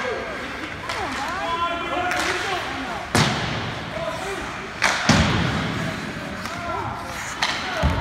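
Ice hockey play: sharp bangs against the rink boards about three, five and seven and a half seconds in, the first two loudest, under spectators' shouting.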